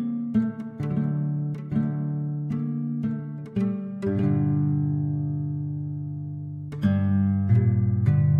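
Sampled harp guitar (Aviram Dayan Harp Guitar virtual instrument) played from a keyboard. Plucked notes with sharp attacks come in quick succession, then a low chord rings and slowly fades for about three seconds before fresh plucked notes come in near the end.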